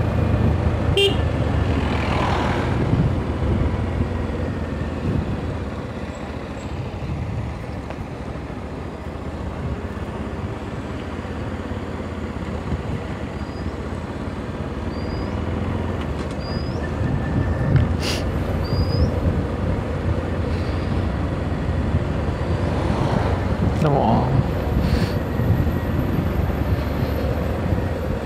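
Motorcycle engine running with road and wind rumble on the bike-mounted camera's microphone while riding a winding hill road, a steady low drone that eases off for a few seconds and then builds again.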